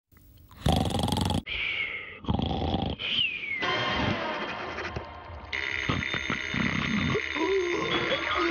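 Cartoon sound effects voicing a drawn creature: a run of short, separate growl-like vocal noises, then a falling whistle-like glide about three seconds in, with the sound growing denser and steadier from about halfway.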